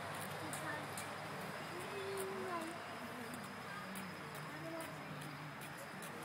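Faint, indistinct voices of people talking at a distance, with no clear words, over a steady hiss.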